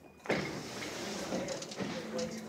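A sudden rise in noise about a quarter second in, then the steady noise of a large indoor hall.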